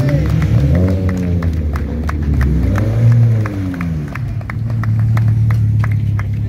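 Steady rhythmic hand clapping, about four claps a second, as a Suzuki Swift race car's engine passes, rising and falling in pitch a few times as it is revved, then settling to a low steady idle in the second half.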